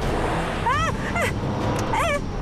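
A car running, with steady engine and road noise, as a woman gives short high-pitched shrieks of fright, about halfway through and again near the end.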